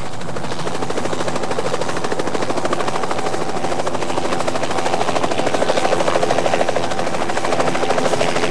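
Light helicopter flying, its rotor blades giving a steady, rapid chop.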